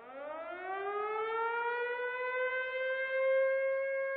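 Air-raid siren winding up: one wail that climbs in pitch over about two seconds, then holds steady.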